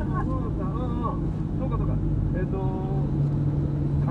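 Steady car running noise heard from inside the cabin while driving: a constant low engine hum with road noise beneath, with talk laid over it.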